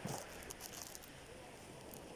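Faint wind and shore water at the water's edge, with a soft knock from a hand on the camera right at the start and a few light handling ticks.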